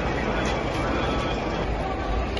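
Outdoor street noise: indistinct voices over a steady low rumble.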